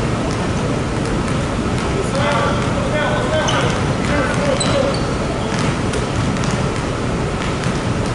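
Basketballs bouncing irregularly on a hardwood gym floor as several players dribble and pass at once, with players' voices calling out in the background.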